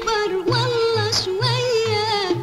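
Egyptian film song: an ornamented melody with wavering pitch over orchestral accompaniment, with a low pulse about twice a second.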